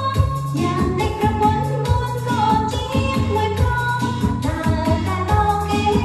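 Khmer pop song with singing over a band backing with a steady drum beat.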